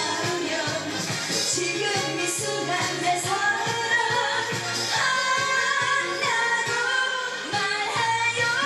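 A woman sings a Korean pop song live into a microphone over a backing track with a steady beat. Her voice comes in about three seconds in, and her held notes waver with vibrato in the second half.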